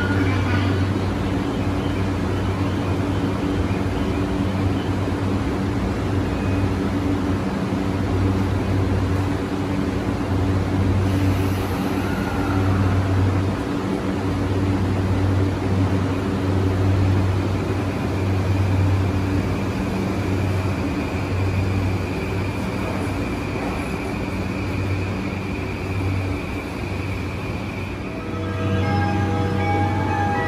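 E235 series 1000 electric train standing at the platform, its onboard equipment giving a steady low hum that swells and eases, with a faint high steady tone in the later part. A melody begins near the end.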